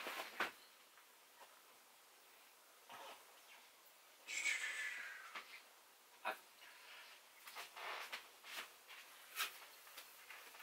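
Faint, scattered knocks and shuffles of a person moving about a small room, with a brief hissing, slightly pitched sound about four and a half seconds in.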